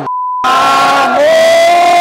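A censor bleep, a steady pure tone that blanks all other sound for about half a second. Then a man shouting "¡Olé!" with a stadium crowd of football fans, ending in one long held shout.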